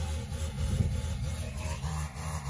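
A small engine running steadily with a low rumble.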